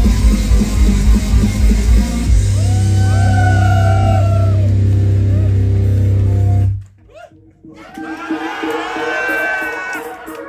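Loud live pop-rock music through a club PA with a driving beat, settling into a held low bass note with voices over it, then cut off abruptly about seven seconds in. After a short lull, voices rise again.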